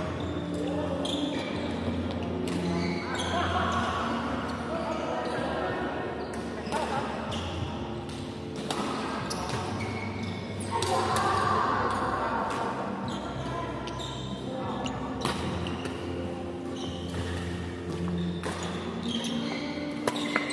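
Badminton rackets striking shuttlecocks, sharp irregular smacks of rallies on several courts, echoing in a large hall, with players' voices.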